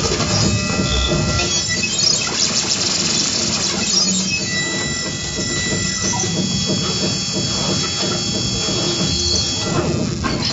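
Live improvised electroacoustic music from electronics and a double bass: a dense, noisy, grinding texture with several thin, sustained high squealing tones over it.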